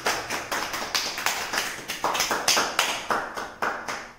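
Hands clapping: a quick, steady run of claps, about four or five a second, dying away near the end.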